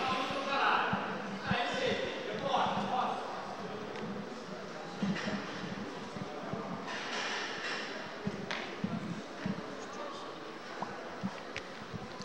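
Indistinct voices of players and onlookers talking in a large indoor hall, over a steady background hum of the room, with a few faint knocks in the second half.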